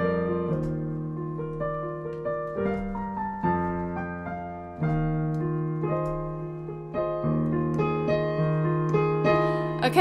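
Digital piano playing slow sustained chords over a held low bass note, with a new chord or melody note struck every second or so. These are the final instrumental bars of a song.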